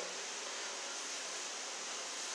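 Faint steady hiss of a large store's background noise, with no distinct events.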